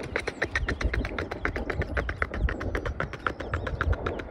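Wind buffeting the microphone, an uneven low rumble, with a rapid run of small clicks at about ten a second.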